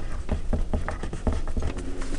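Pen writing on paper: a quick, irregular run of short scratches and taps as letters are written, over a low steady hum.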